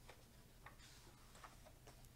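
Near silence, with a faint paper rustle and a few light ticks as a picture-book page is turned by hand.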